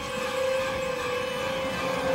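A single steady held tone, wavering slightly in pitch, over a rough noisy bed in a dramatic film soundtrack mix.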